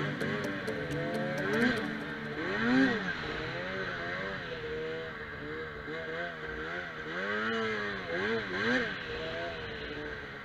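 Arctic Cat Crossfire 800's two-stroke twin engine running under riding throttle, its pitch rising and falling several times as the snowmobile carves across the snow.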